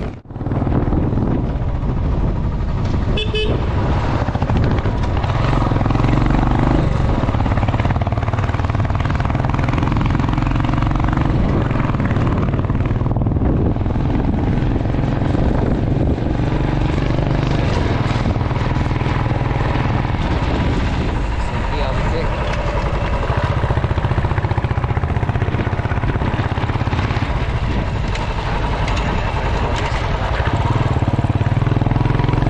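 Royal Enfield motorcycle engine running steadily under riding, heard from the pillion seat with wind rushing over the camera microphone. A short horn toot sounds about three seconds in.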